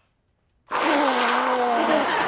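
A very loud, drawn-out nose blow into a tissue, starting abruptly under a second in, with a low buzzing, honking pitch over a noisy rush.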